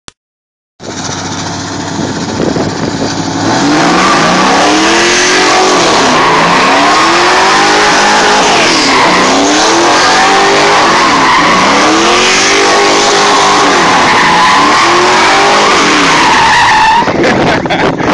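Pontiac Trans Am's GM LS V8 doing donuts. It runs at a steady low note for the first few seconds, then revs hard with its pitch rising and falling over and over, about every two seconds, over continuous tire squeal.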